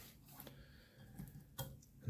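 A few faint ticks of small parts being handled, with one sharper tick about one and a half seconds in: a fidget toy and a hex key being picked up off a work mat before unscrewing.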